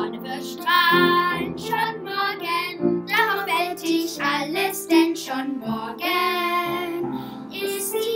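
Children singing a song together over instrumental accompaniment.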